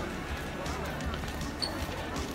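Pedestrian street ambience: passersby talking, with music and irregular low thumps.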